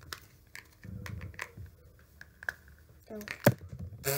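Light plastic clicks and rattles as the pieces of a doll stand are handled and fitted together, with one sharp plastic click near the end.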